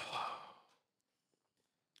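A man's heavy sigh: one breathy exhale that starts suddenly and fades out in under a second.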